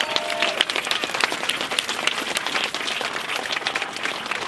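Crowd applauding, many hands clapping in a dense, steady patter.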